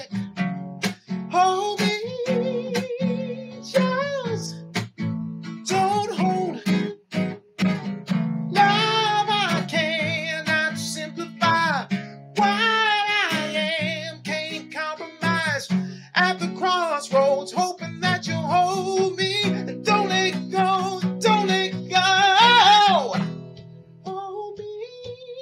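A man singing a slow soul ballad with vibrato, accompanying himself on a strummed acoustic guitar; his voice rises to a loud held note near the end.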